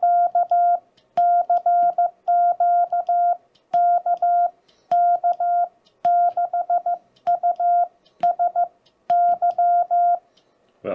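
Morse code (CW) sidetone from a ham transceiver, a steady beep of about 700 Hz keyed on and off in dots and dashes by a homemade key. It comes in groups of characters with short gaps, and the key's contacts click at the presses.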